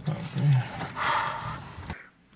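A person's wordless, breathy vocal sound, a short low murmur followed by a longer exhale-like sound that fades away, heard inside a car cabin.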